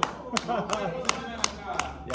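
One person clapping his hands steadily, about three claps a second, in celebration of a goal, with a short laugh among the claps.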